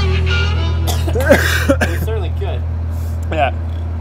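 Background music holding a low sustained note, which stops near the end, with men's voices talking casually over it from about a second in.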